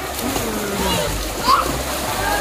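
Several children swimming hard in a pool just after pushing off, their kicking legs and arms splashing the water steadily. Faint children's voices sound in the background.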